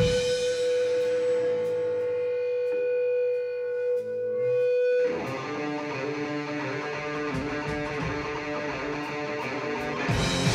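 Live rock band playing an instrumental passage. An electric guitar holds one long sustained note for about five seconds, then the band breaks into a busier, denser section of many notes.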